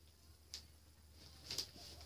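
Faint handling sounds of a cardboard package being worked open by hand: a brief click about half a second in and a short scrape or tap near the end.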